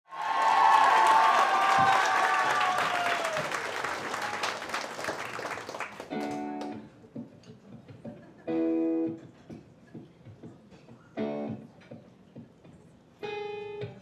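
Audience applause and cheering that fades out over the first six seconds, then the live band plays sparse, short held chords, four of them about two seconds apart, as the song's intro begins.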